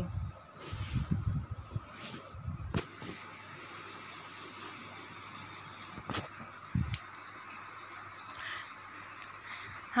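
Metal spatula stirring boiled peas frying in oil in a steel kadai: scraping with a few sharp knocks against the pan, over a faint steady sizzle.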